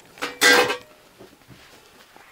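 A single clatter of cookware and cutlery against a bowl about half a second in, with a short ringing tone, followed by a few faint clicks of handling.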